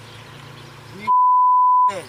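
A single censor bleep: one steady, pure, high beep lasting just under a second, starting about a second in, with all other sound cut out beneath it, covering a spoken word. Before it there is only a low street background.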